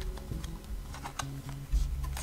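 A deck of oracle cards being shuffled by hand: a run of light clicks as the cards slide and flick against one another, with a dull thump near the end.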